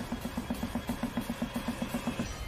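Trailer sound design: a rapid, even low pulsing, about ten pulses a second, growing slightly louder.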